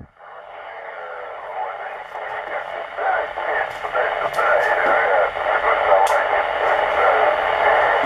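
Receiver audio from a Yaesu transceiver tuned to a weak 2-metre FM signal from a distant Echolink node: a narrow, hissy, noisy signal that fades and grows louder over the first few seconds. A few faint clicks come near the middle.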